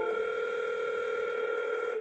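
Telephone ringback tone of an outgoing call: one steady ring held for about two seconds while the line rings at the other end, cut off as the call is answered.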